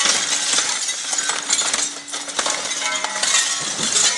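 Brick rubble clattering and crumbling in a dense run of small impacts as an excavator's demolition grab breaks away a section of brick wall, with the excavator's engine running steadily underneath.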